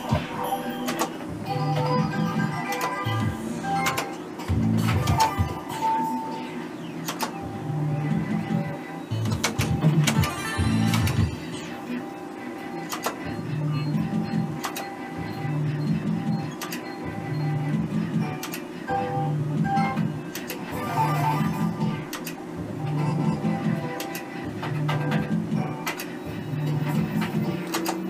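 Merkur 'Up to 7' slot machine spinning game after game: its electronic spin tune and reel-stop clicks repeat about every two seconds.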